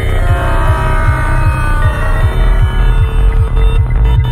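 Dark psychedelic trance track at about 155 BPM: a pounding kick and rolling bass, about two and a half beats a second. Layered synth tones sit above and sweep down over the first two seconds. A deep sub-bass swells in about halfway through.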